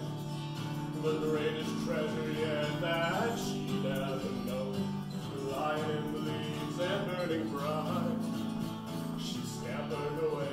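Acoustic guitar strummed steadily as accompaniment, with a man singing a folk-style song over it.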